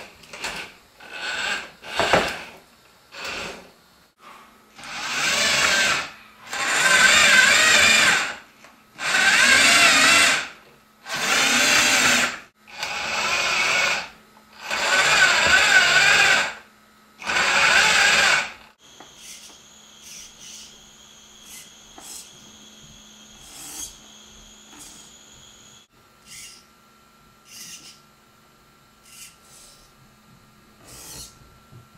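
Electric drive motors and rubber tracks of a small tracked robot whirring in start-stop bursts as it is driven: a string of short bursts, then about seven runs of a second or two each. After that comes a much fainter high whine with small clicks.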